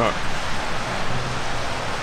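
A steady, even hiss of outdoor background noise in the rain, with a faint low hum under it.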